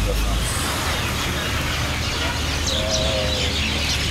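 Outdoor street ambience: a steady rumble of traffic with birds chirping faintly, and a short wavering tone about three seconds in.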